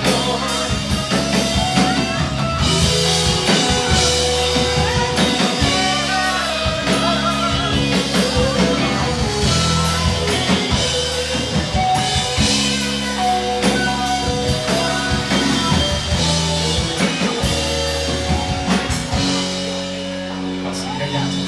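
Live rock band playing a song: drum kit, electric guitar and bass guitar, steady and loud throughout.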